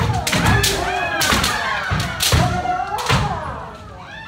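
Kendo sparring by several pairs at once: overlapping drawn-out kiai shouts, with repeated sharp strikes of bamboo shinai on armour and stamping footwork on a wooden floor.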